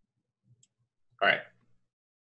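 Speech only: a man says "All right" about a second in, over near silence, with a couple of faint clicks just before.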